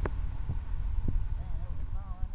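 Low, uneven outdoor rumble with a few faint clicks, and a faint distant voice in the second half; no model engine is running.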